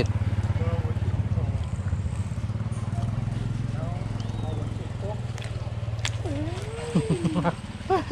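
A small engine running steadily at idle: a low, evenly pulsing hum that eases off a little after about seven seconds, with faint voices over it.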